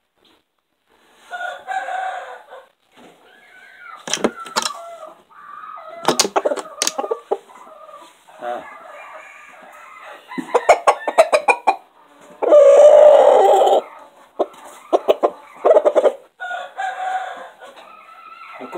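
Rooster crowing and clucking at close range, with groups of sharp clicks in between; the loudest call, a crow lasting over a second, comes about twelve seconds in.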